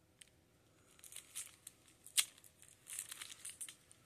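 Clear plastic shrink-wrap on a firework pack crinkling as it is handled and turned, in short scattered rustles with one sharper crackle about two seconds in.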